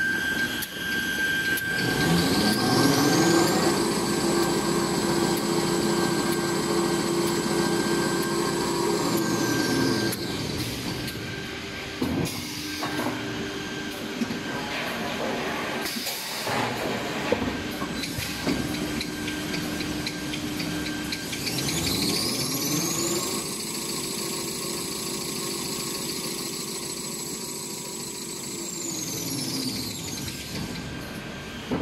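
Toilet paper and paper towel rewinder running. Its drive whine rises in pitch as the machine speeds up, holds steady, then falls as it slows. This happens twice, with a few knocks in the slower stretch between the two runs.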